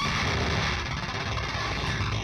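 The final chord of a crossover hardcore punk song ringing out and slowly fading: a noisy wash of distorted electric guitar.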